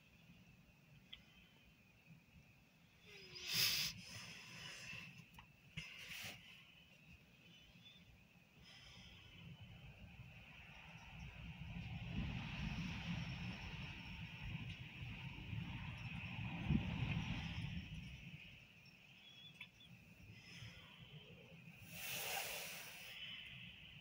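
Gusty wind during a snow squall, blowing across the microphone as a low rumble that builds through the middle and then eases. Two short, louder rushes of wind come near the start and near the end.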